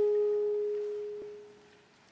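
A held saxophone note, nearly pure in tone, fading away over about a second and a half at the end of a phrase.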